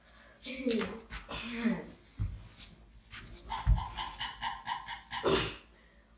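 A child's strained groaning and a held high-pitched whine as he struggles up off the floor with his legs inside a sweater's sleeves, with three dull thumps on the floor, the loudest near the middle.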